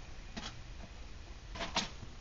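A few light clicks and taps from the thin titanium panels of a hexagon wood stove being handled: a faint one about half a second in and a louder pair near the end, over a low steady hum.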